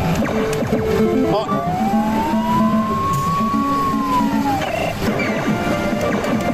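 Famista Kaidou-ban pachislot machine playing its retro 8-bit baseball-game sound effects: short beeping electronic notes, and about a second and a half in, one long whistle that rises and falls back over about three seconds, like a batted ball in flight. The machine sounds over a steady din of slot-hall noise.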